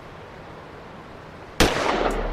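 Soft, steady hiss from a rap track's intro, broken near the end by a sudden loud bang with a short decaying tail.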